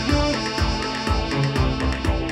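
Live electronic music from analog modular synthesizer and keyboards: a steady pulsing beat under a held synth bass line, with stepping melodic synth notes above.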